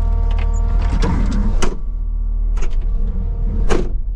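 A Kubota skid steer's diesel engine idles steadily, heard from inside the cab. About a second and a half in, a sliding swell ends as the cab is shut, muffling the outside sound, followed by two sharp latching clunks before the operator finds the machine locked.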